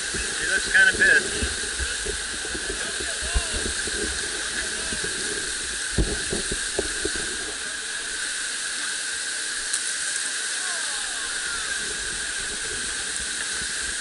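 Whitewater rapids rushing in a steady roar of water, with a few dull knocks about six seconds in.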